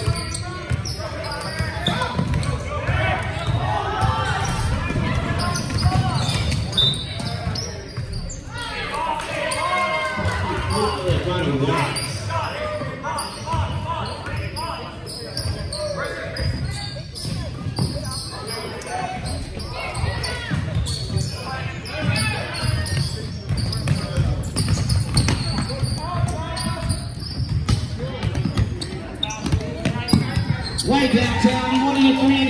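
Basketball game in a gymnasium: a basketball bouncing on the hardwood court as players dribble, with indistinct calls and chatter from players and spectators echoing in the hall.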